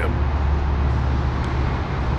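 A steady low rumble with an even haze of noise above it, unchanging, with no distinct events.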